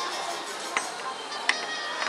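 Two sharp clicks of wooden puzzle pieces knocking together in the hands, about three quarters of a second apart, over steady background music.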